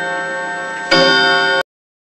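A clock-tower bell tolling with a long ringing tone. It is struck again about a second in, and the sound then cuts off abruptly into silence.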